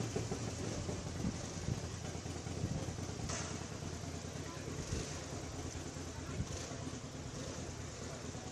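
A motor vehicle engine idling with a steady low hum, under the murmur of a crowd, with a few brief knocks.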